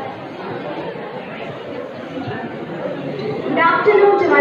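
Murmur of many people chatting in a large hall. Near the end, one clear voice over the microphone begins.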